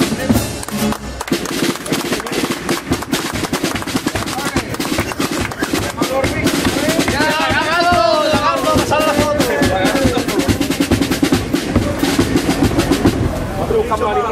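Carnival chirigota band music: rapid snare-drum and bass-drum percussion with strummed guitar, played as an instrumental stretch between sung verses. Voices rise over it for a few seconds about halfway through.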